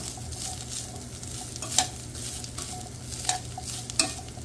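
Diced ham sizzling as it fries in a tablespoon of bacon grease in a skillet. It is being stirred with metal tongs, which clink sharply against the pan a couple of times, near the middle and near the end.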